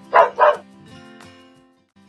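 A dog barks twice in quick succession over a short jingle, which then fades out.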